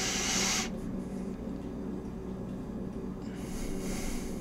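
A person breathing out audibly close to the microphone, twice: one soft hissing breath at the start and another near the end. A faint steady hum runs underneath.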